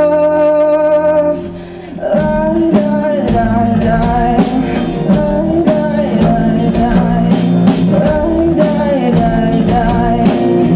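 A woman's held sung note with steady accompaniment ends about a second in. After a brief dip the full band comes in: drum kit, bass and guitars playing a rock groove under her singing.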